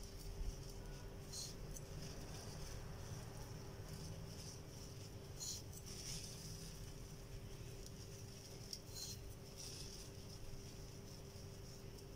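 Faint soft rustles of desiccated coconut being sprinkled by hand onto a syrup-soaked semolina cake, coming a few times at irregular moments, over a steady faint hum.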